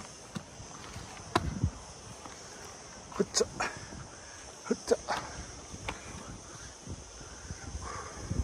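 Footsteps scuffing and crunching on dry, stony dirt during a steep uphill climb, in clusters about a second and a half in, around three seconds and around five seconds, mixed with short breathy vocal sounds of effort. A steady high hiss runs underneath.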